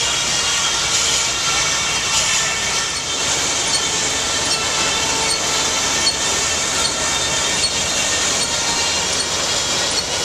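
Steam-driven machinery running: a steady hiss of escaping steam and running noise with a faint high whine and occasional light ticks.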